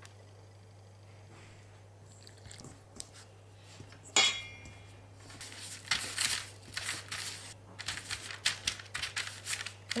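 Hands kneading dough on a sheet of baking paper, the paper crinkling and rustling again and again through the second half. A single sharp click comes a little before the middle.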